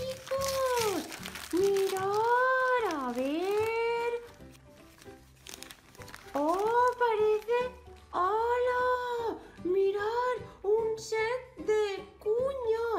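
High-pitched character voice making long, sliding exclamations that rise and fall in pitch, more sung than spoken. In a quieter stretch in the middle, gift-wrapping paper crinkles and tears as a present is opened.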